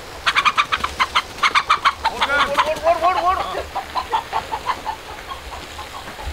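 Country chicken (nati koli) clucking in alarm while being chased. A fast run of sharp clucks starts just after the opening, then come a few drawn-out squawks that rise and fall in pitch, easing into slower, spaced clucks.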